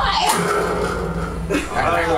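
A band's loud ska music cuts off at the start, leaving voices talking and calling out in a small room. A low steady tone sounds underneath until about a second and a half in.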